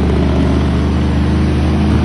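Heavy diesel dump truck coming downhill with its engine (Jake) brake on: a loud, steady, low rapid rattle from the exhaust.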